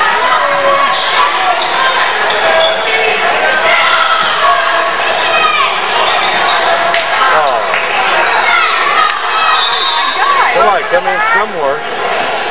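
Basketball bouncing on a gymnasium's hardwood floor during live play, over continuous voices from players and the crowd in the gym.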